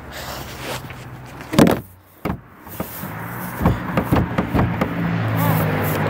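A loud thump about one and a half seconds in, another knock a moment later and a run of knocks a couple of seconds after, over a steady low hum.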